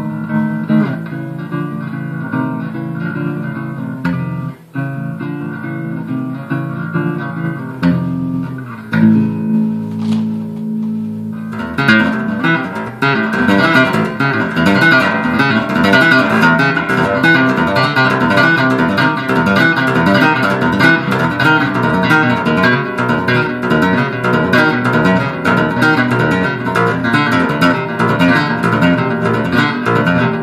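Electric bass guitar played solo: held, ringing notes and chords for the first twelve seconds or so, then a sudden switch to fast, continuous strummed playing that is louder and fuller.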